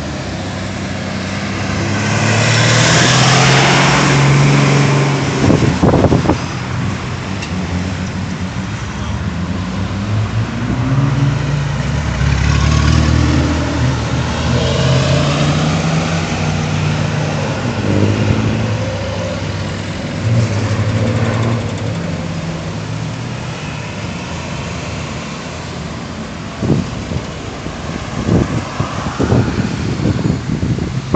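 Road traffic going around a roundabout: cars, pickups and minibuses passing one after another, with engine hum and tyre noise swelling and fading and engine pitch rising and falling as vehicles slow and pull away. The loudest pass comes about three seconds in, and a few short bumps sound near the end.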